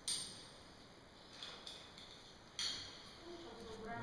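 Sharp metallic clinks of caving rigging hardware: a clink right at the start that rings briefly, a second about two and a half seconds later, and fainter taps between. A short voiced sound follows near the end.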